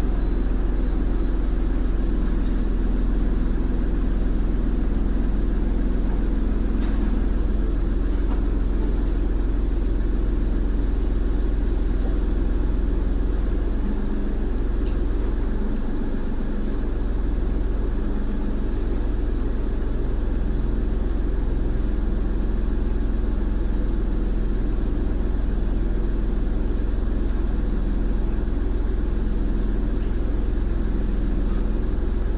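Car engine idling steadily, a low hum heard from inside the cabin while the car stands still, with a faint click about seven seconds in.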